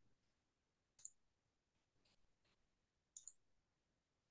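Near silence broken by a few faint computer mouse clicks: one about a second in and two close together just after three seconds.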